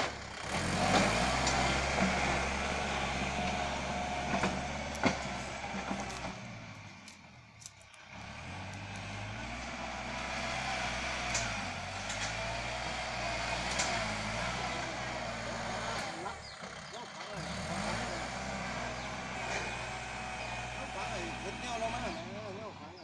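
Kubota L5018 tractor's diesel engine running under load while its front blade pushes and levels loose soil. The engine note rises and falls and eases off twice for a moment. A few sharp clanks come near the start and about five seconds in.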